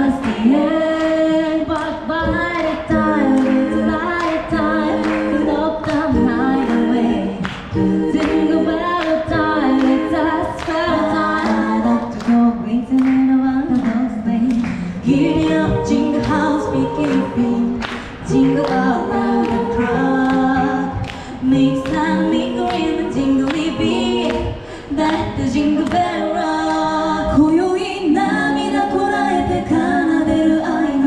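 A group of women singing together into handheld microphones, amplified through loudspeakers, in continuous phrases with several voices at once.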